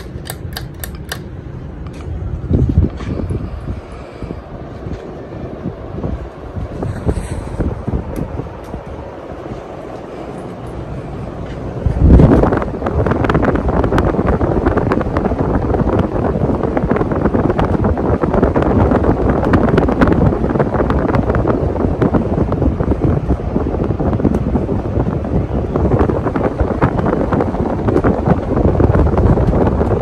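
52-inch Gulf Coast Riviera II ceiling fan running, its spinning blades giving a steady rush of moving air. A few light clicks sound at the start, and about twelve seconds in the rush jumps louder and stays there.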